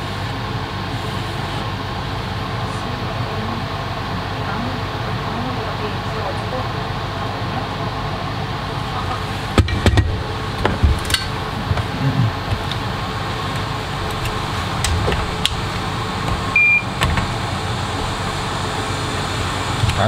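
Steady whir of electronics rework bench fans, with a few light clicks and taps of tools on the board in the middle and one short high beep near the end.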